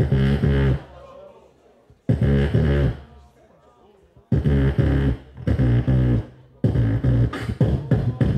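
Amplified beatboxing through a handheld microphone: short phrases of heavy bass kicks and vocal percussion come about every two seconds with brief pauses between them, and run almost continuously near the end.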